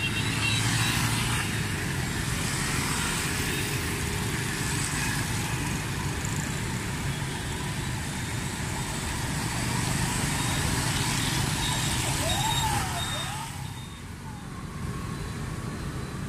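Street traffic at a busy intersection: a stream of motorbikes and cars passing over a rain-wet road, a steady engine hum with a high hiss over it. The traffic thins and quietens for a moment near the end.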